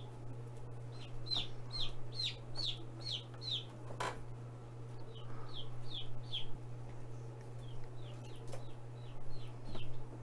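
Baby Rhode Island Red/ISA Brown chicks, about two and a half days old, peeping: runs of short, high, falling peeps, a couple a second, in three bursts. There is a single sharp click about four seconds in, and a steady low hum underneath.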